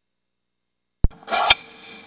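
Dead silence, then about a second in a sharp click and a short rustle ending in a second click, like a microphone being switched on and handled, followed by faint hiss.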